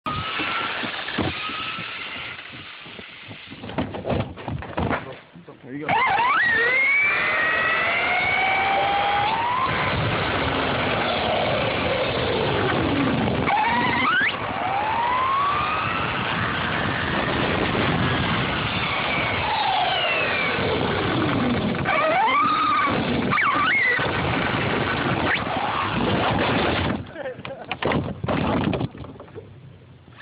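Brushless electric motor of a Traxxas T-Maxx RC truck whining up and down in pitch as it speeds up and slows, over a steady rushing noise of tyres on a chip-seal road. The run starts suddenly about six seconds in and falls away a few seconds before the end.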